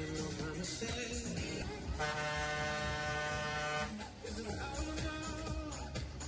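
Loud fairground ride music with a steady beat, and a steady horn-like tone sounding for about two seconds in the middle.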